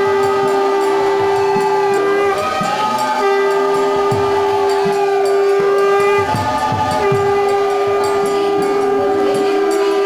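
Kirtan music: a harmonium sustains long reedy chords, breaking off twice, under group singing, with hand-drum strokes beneath.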